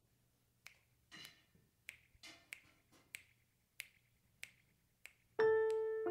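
A steady rhythm of sharp snapping clicks, about one every two-thirds of a second, leading into piano music that starts near the end.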